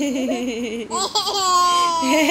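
A toddler laughing: a wavering, bubbling laugh in the first second, a brief catch, then a drawn-out held vocal note.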